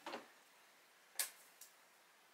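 A light-box letter sign being handled on a glass tabletop: a soft knock at the start, then a sharp click a little over a second in and a fainter click just after it.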